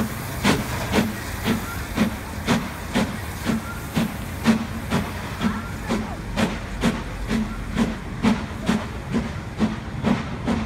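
GWR Castle class 4-6-0 steam locomotive 5043 Earl of Mount Edgcumbe pulling away with its train: a steady exhaust beat of about two chuffs a second, the sharp top of the beats dulling a little in the second half as it draws away.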